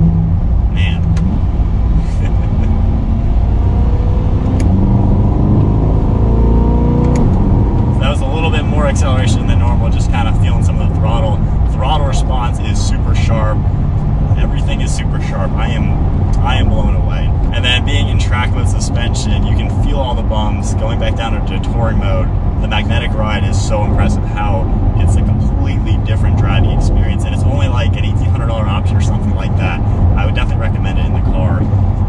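The 2020 Corvette Stingray's mid-mounted 6.2-litre V8, heard from inside the cabin, accelerating in manual mode with its pitch rising for several seconds before it eases off. After that a man talks over steady engine and road noise.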